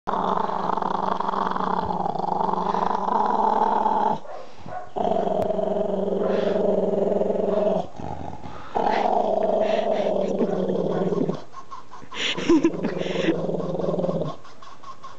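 A dog growling as a hand works at her muzzle: three long, steady growls of three to four seconds each, separated by short pauses for breath, then a few shorter, higher sounds near the end.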